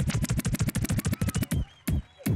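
A DJ's fast, even roll of drum hits over the PA, with a faint rising tone, breaking off about one and a half seconds in, followed by a single hit just before the end.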